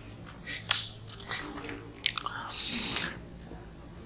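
Soft paper rustling and small clicks as the pages of a book are handled and turned close to a microphone, in a few short bursts with a longer rustle near the middle.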